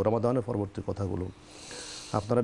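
A man speaking, then, about a second and a half in, a pause filled by a soft hiss: a breath drawn in close to a lapel microphone.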